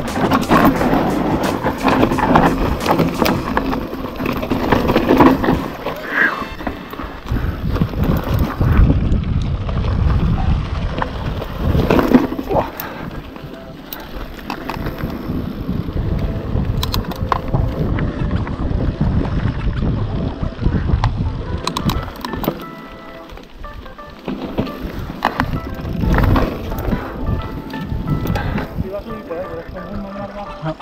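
Mountain bike ridden over a rough dirt trail: rattling and knocks from the bike and tyres on loose ground, with uneven noise rising and falling, under background music.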